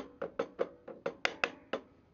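A quick, slightly uneven run of sharp taps, about five a second. They come from hand work on a combination bandsaw's upper blade guide bearing adjuster, in footage played at double speed.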